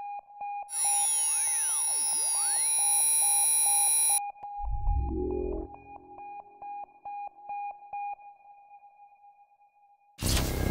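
Synthesized sci-fi electronic sounds: a steady, rapidly repeating beep with a thin high tone over it, joined about a second in by a loud burst of many sweeping, gliding tones that cuts off suddenly after about three seconds. A low rising whoosh follows, and the beeping fades out a few seconds before the end.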